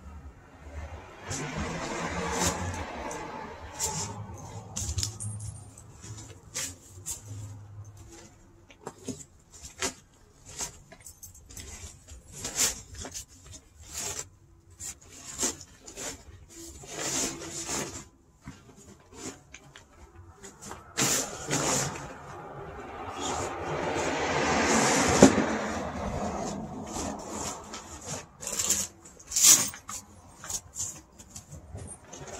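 Deflated vinyl inflatable being pulled from its bag and unrolled on asphalt: rustling, crinkling and scraping of the fabric with many small knocks from handling. A louder rush of noise builds and fades in the second half.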